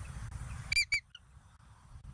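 Bald eagle giving two short, high-pitched chirps in quick succession, over a steady low background rumble.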